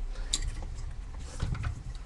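One sharp click about a third of a second in, then a few faint knocks and handling sounds, over a low steady hum.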